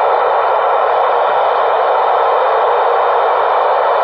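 Steady static hiss from an Icom ID-4100A 2m/70cm transceiver's speaker, its squelch open on a channel where no voice is coming through.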